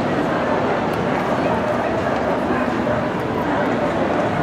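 Crowd chatter: many voices talking at once in a steady, dense babble.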